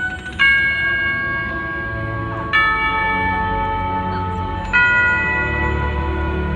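A clock-tower bell striking three times, about two seconds apart, each stroke ringing on, over orchestral music from the show's soundtrack.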